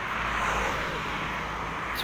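A car driving past on the street, a steady rush of tyre and engine noise that swells slightly and then eases.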